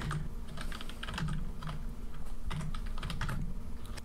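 Computer keyboard keys being typed: a quiet, irregular run of separate key clicks as a number calculation is entered.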